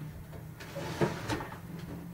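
Objects being handled and set down at a workbench: light rustling with a couple of short knocks, the sharpest about a second in.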